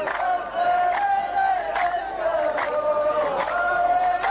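A large chorus of men chanting a verse in unison, in long held notes that move together, with a sharp beat about every 0.8 seconds.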